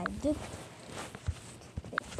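A spoken word ends, then a few soft, scattered taps and knocks: fingers tapping and handling a tablet touchscreen.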